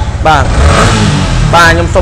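A motorcycle engine running, strong in the low end, with a man's voice briefly over it.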